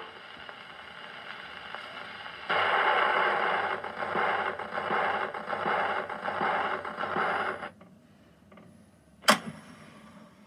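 Acoustic gramophone's needle running in the run-out groove of a 78 rpm record after the music has ended: a faint hiss, then a louder scratchy swish that pulses about every three-quarters of a second, once per turn of the record, until it stops suddenly. Near the end a single sharp click as the tonearm is handled.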